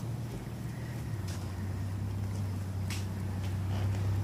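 A steady low background rumble that grows a little louder about a second in, with a few faint clicks.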